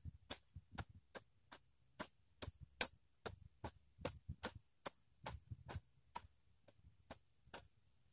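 Hoe (cangkul) blade chopping into grassy soil in quick short strokes, about two to three sharp chops a second, stopping near the end.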